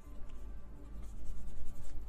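Tarot cards being shuffled by hand: a soft, scratchy rubbing of card against card, over faint background music.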